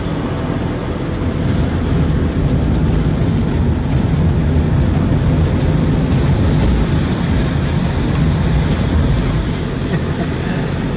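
A car's engine and tyres on the road, a steady drone heard from inside the moving car, getting a little louder about two seconds in.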